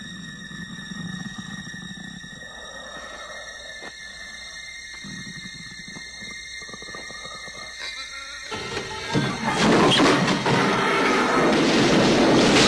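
Horror film soundtrack: a dim, brooding score for most of the stretch, then a loud, dense rush of noise that swells in about three quarters of the way through and stays loud as debris flies.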